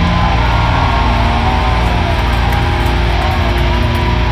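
Heavy metal band playing live, electric guitars over a loud, dense, unbroken wall of sound.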